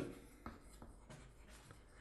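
Chalk writing on a chalkboard: faint scratching with a few light taps as the strokes are made.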